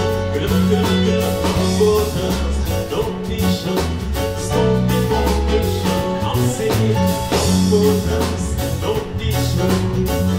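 Live band with a lead singer, electric guitars, keyboard, drum kit and congas, amplified through a Bose L1 line array PA. The band plays steadily over a driving bass line and beat.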